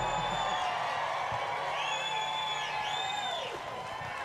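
Concert audience cheering, with several high whoops rising above the crowd noise three times, right after a song ends.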